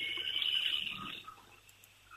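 A pause in the talk: a faint hiss that fades away about halfway through, leaving near silence.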